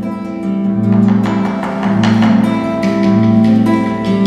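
Nylon-string acoustic guitar strummed over a bombo legüero drum struck with sticks: an instrumental passage of Argentine folk music with no singing.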